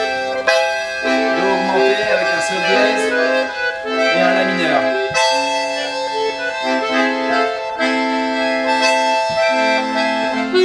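Diatonic button accordion playing a melody over left-hand bass and chords, the low chord notes changing about every second.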